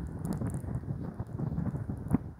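Wind buffeting a phone's microphone outdoors: an uneven low rumble, with scattered faint ticks on top.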